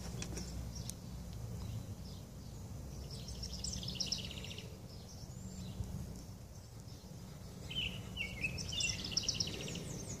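Faint birdsong: two spells of quick high chirps, a few seconds in and again near the end, over a steady low background hum.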